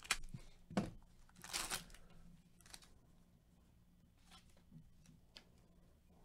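Foil wrapper of a Panini Mosaic basketball card pack being torn open by hand: two short rips in the first second, then a longer tear just before two seconds in. After that come a few faint clicks as the cards inside are handled.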